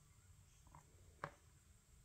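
Near silence: room tone, with one faint short click about a second in.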